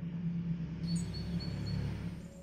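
Background ambience: a steady low hum, with a thin, high chirping tone joining about a second in.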